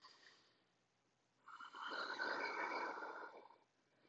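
One long, hissing breath from a man holding a handstand, lasting about two seconds and starting about a second and a half in.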